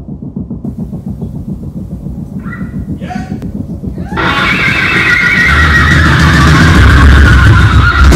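A low, pulsing rumble with a brief high squeal about two and a half seconds in. About four seconds in, a loud distorted swell of noise cuts in and keeps building, with a heavy low end from about five and a half seconds. It is an intro build-up ahead of heavy metal music.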